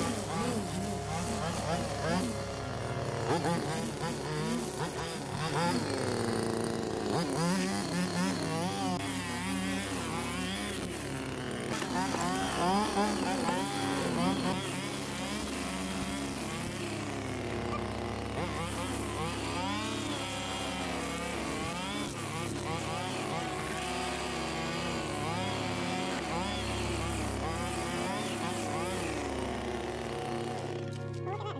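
Stihl FS string trimmer running, its engine speed rising and falling repeatedly as the line cuts grass along an edge.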